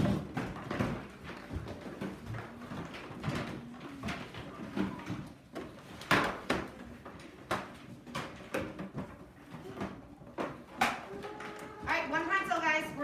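Classroom noise: scattered knocks and clatter with faint murmuring voices, the sharpest knocks about halfway through and near the end.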